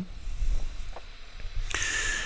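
A pause in the narration holding only the low rumble of the recording room on the microphone. There is a faint click about a second in, then another click near the end followed by a short soft hiss.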